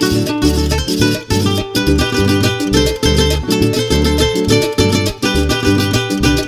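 Instrumental passage of Colombian carranguera music: plucked string instruments playing quick lead runs over a steady, repeating bass beat, with no singing.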